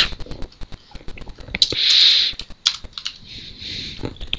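Typing on a computer keyboard: a quick, uneven run of key clicks. A short hiss about two seconds in is louder than the keys.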